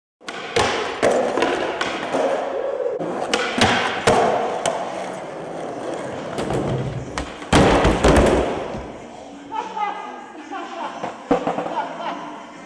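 Skateboard wheels rolling on a concrete floor, with sharp clacks of the board through the first few seconds. About three-quarters through comes a loud crash as the skater falls onto a wooden ramp with his board.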